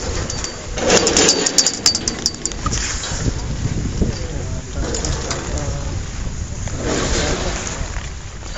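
People's voices talking and exclaiming over a steady low rumble of wind on the microphone. The loudest stretch of voices, with a few sharp clicks, comes about a second in.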